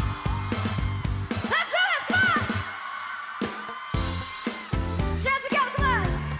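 Live pop band playing a steady drum and bass groove. A female singer's sung phrases come in about a second and a half in and again near the end.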